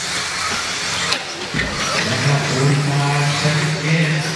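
Radio-controlled off-road buggies racing on a dirt track, their small motors whining steadily, with a sharp knock about a second in and a dull thud just after. A steady low hum joins about halfway through.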